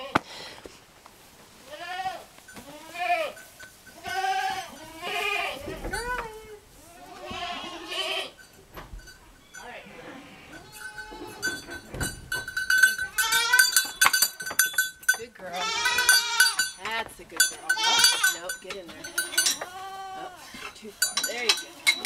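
Goats bleating, one wavering call after another, with a lull around the middle and a run of close-spaced calls through the second half.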